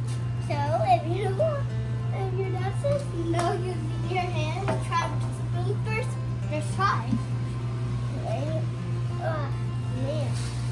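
A child's voice talking indistinctly over background music, with a steady low hum underneath.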